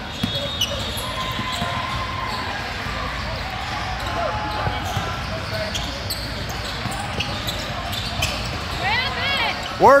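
Steady echoing din of a basketball game in a large indoor hall: a constant murmur of voices with scattered ball bounces on the court. It ends with a loud shout of encouragement.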